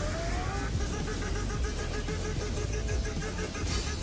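Action-anime sound effects from the episode: a short rising whine, then a steady machine-like hum with rapid even pulsing, about seven pulses a second, over a low rumble.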